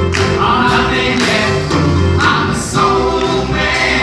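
A group of singers performing a song with musical accompaniment over a steady bass line.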